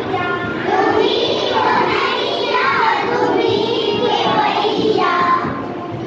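Children singing a song together, with long held notes that rise and fall.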